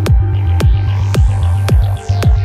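Downtempo psychedelic electronic music (psybient): a deep kick drum hits about twice a second over a steady throbbing sub-bass, while a high filtered sweep rises and then falls away near the end.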